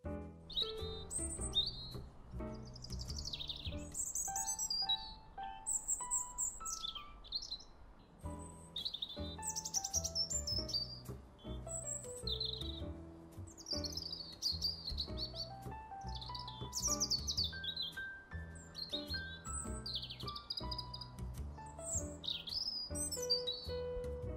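Small birds chirping and singing over and over, in quick sweeping calls. Under the birds is soft background piano music with a slow stepping melody and low bass notes.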